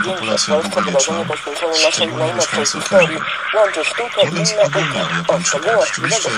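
Speech only: a person talking continuously, as on a radio news broadcast.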